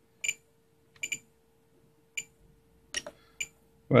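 Spektrum DX8 radio transmitter's scroll roller being turned and pressed through its menus: about six short, sharp ticks with a faint high ring, irregularly spaced, two of them in quick pairs.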